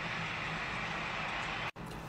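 Steady low background hiss with no distinct events, broken by a sudden brief dropout to silence near the end where the audio is cut.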